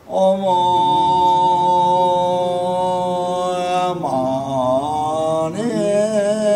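A Tibetan Buddhist monk chanting in a slow, drawn-out voice into a microphone. After a breath at the start he holds one steady note for about four seconds, then the pitch dips and wavers before rising into another long held note near the end.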